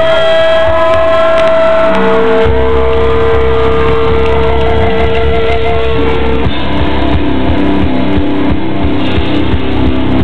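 Heavy metal band playing live on distorted electric guitars, bass and drums. Long held guitar notes ring over the band for about the first six seconds, then a faster riff takes over. The recording is loud and dull-topped, with no treble.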